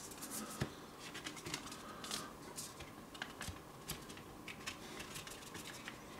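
Faint scraping and small irregular clicks of cardboard being handled as a CD is worked out of a tight card sleeve.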